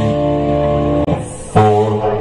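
Live oldies band playing: electric guitar over drums with held chords. The sound eases off briefly about a second in, and then a new chord comes in strongly.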